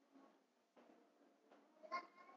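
Near silence: faint room murmur in a hall, with one brief, higher-pitched voice-like sound right at the end.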